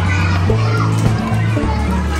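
Children's voices and play chatter over background music with a bass line of held notes.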